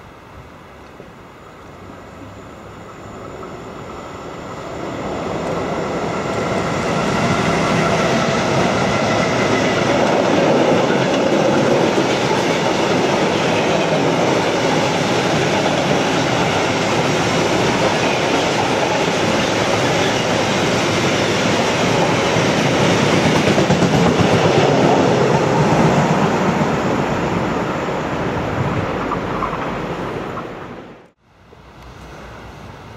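Freight train passing close by: the noise builds over the first several seconds as it approaches, then a long string of bogie hopper wagons rolls past at a steady, even level before fading near the end.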